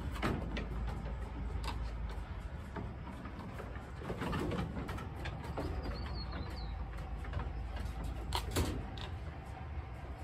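Nigerian dwarf goats moving about on a slatted wooden floor: scattered knocks and scuffs of hooves on the boards, with a cluster of sharper knocks about eight and a half seconds in.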